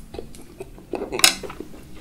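A bare wooden skewer clattering down onto a ceramic plate: one sharp, loud clack a little over a second in, with a few softer clicks before it.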